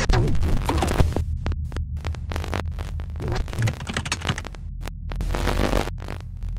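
Glitch-style intro sound design for an animated title card: a deep, steady bass drone under choppy bursts of static-like noise that cut in and out abruptly.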